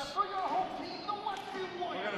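Basketball gym ambience: voices echoing in the hall with a basketball bouncing on the hardwood floor, one sharp bounce about a quarter second in.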